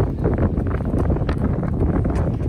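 Wind buffeting the microphone: a continuous, uneven low rumble, fairly loud, with a few faint short knocks over it.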